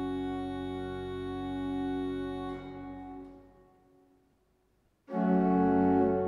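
Church pipe organ holding a sustained chord that is released about two and a half seconds in, its sound dying away in the church's reverberation. After a brief silence, a new, louder chord begins about five seconds in, opening the next verse of the hymn.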